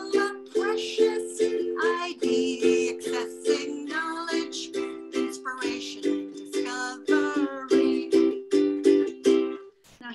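A woman singing while strumming chords on a ukulele, the chords changing every second or so; the song stops just before the end.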